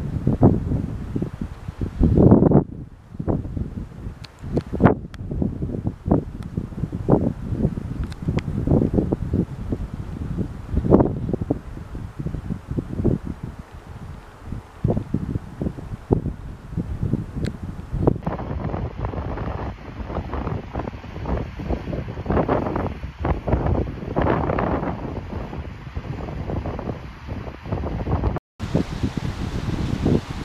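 Wind buffeting the camera's microphone in uneven gusts, with several abrupt breaks in the sound.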